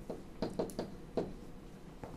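A stylus tapping on a digital writing surface while handwriting: about five light, irregular clicks and knocks in the first second or so, then quieter.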